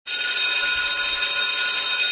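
An alarm bell ringing loudly and steadily, starting suddenly.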